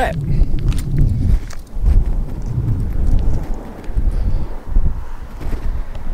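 Wind buffeting the camera microphone: an uneven low rumble that rises and falls in gusts.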